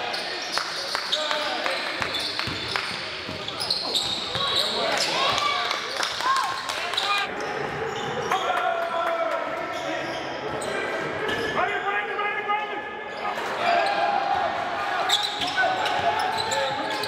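Live basketball game sound in a gym: the ball being dribbled on the hardwood floor, sneakers squeaking, and players calling out, all echoing in the hall.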